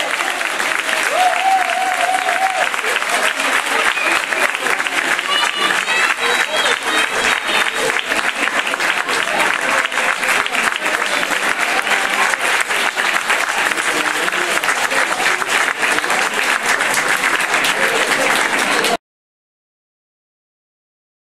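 Audience applauding, with voices calling out over the clapping. The applause cuts off suddenly about a second before the end.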